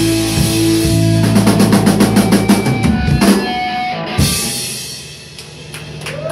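Live rock band playing the end of a song: guitars and bass hold a chord, then the drums play a fast roll for about two seconds. A last hit comes about four seconds in, and the band rings out and fades.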